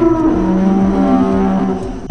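A dinosaur bellow sound effect: a loud, drawn-out, moo-like call that drops to a lower held note about half a second in and eases off near the end.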